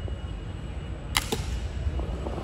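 A single shot from a youth air rifle: one sharp crack about a second in, followed a fraction of a second later by a fainter knock as the target is struck.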